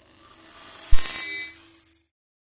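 Logo sting sound effect: a rising whoosh builds into a deep boom just under a second in, followed by bright, bell-like ringing tones that fade out about half a second later.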